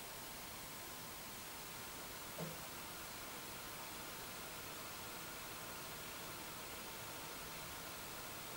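Faint, steady hiss of room tone, with one very short soft blip about two and a half seconds in.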